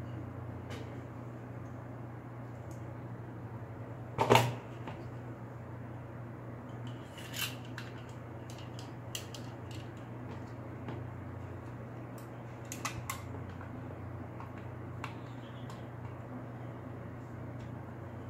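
Small scattered clicks and taps of a Glock pistol magazine being put back together by hand (spring, follower and base plate), over a steady low hum. There is one louder brief sound about four seconds in.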